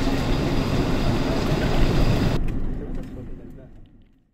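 Steady road and engine noise heard from inside a moving car's cabin. About two-thirds of the way through it turns duller, then fades out to silence at the end.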